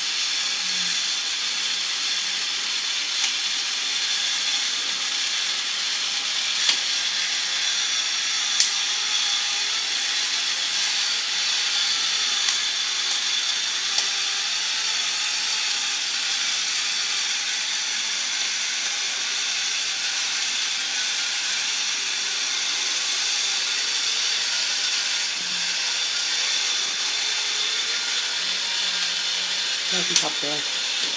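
Battery-powered automatic can opener running around a can: a steady motor whir with a few sharp clicks.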